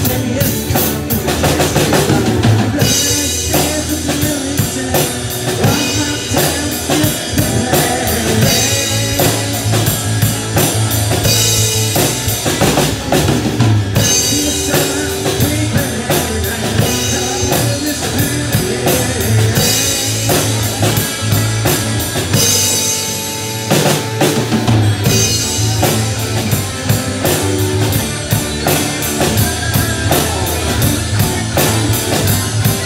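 Live rock band playing an instrumental passage: a drum kit keeping a steady beat on bass drum and snare, under electric bass and electric guitars. The band drops back briefly about three-quarters of the way through, then comes back in.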